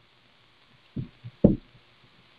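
Three short, soft knocks about a second in, heard over a phone line, with near silence before them.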